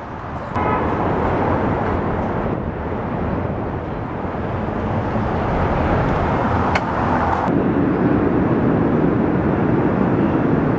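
Loud, steady city street noise of passing traffic, with a short click about seven seconds in.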